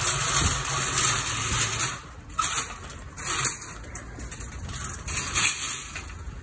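Metal wire shopping trolley rattling as it rolls over asphalt, then a few sharp metal clatters as it is pushed into a row of stacked trolleys and nests into them, the loudest near the end.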